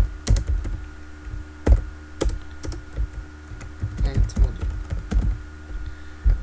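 Computer keyboard being typed on: irregular keystroke clicks, a few a second, over a steady low electrical hum.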